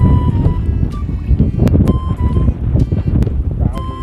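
Strong wind buffeting the microphone, a loud, fluttering low rumble, with background music playing over it.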